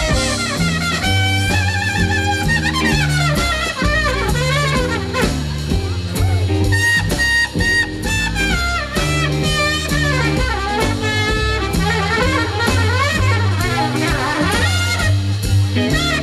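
Live swing band playing an instrumental break: saxophone and brass lines over a walking upright bass and drum kit.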